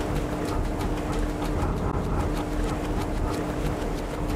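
Grinding machinery of a wind-driven post mill running, the millstones and the sieve machine below them at work on grain. It makes a steady rumble with a low hum and a rapid, even clatter of about five ticks a second.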